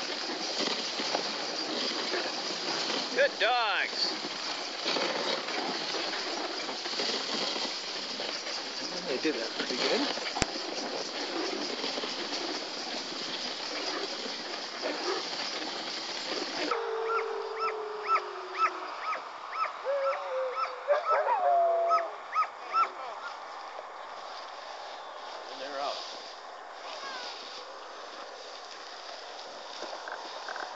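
Steady rushing noise of a dogsled running over snow behind its team, with a brief rising whine about three seconds in. After a sudden cut about 17 seconds in, sled dogs yipping in quick repeated calls and whining in wavering, falling tones.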